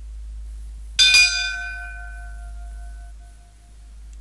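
A bell-like chime struck about a second in, a quick double strike, ringing out and fading over about two seconds.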